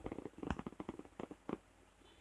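Close handling noise of fingers winding cotton crochet thread around a wire loop: a quick, irregular run of soft rubs and small clicks, easing off near the end.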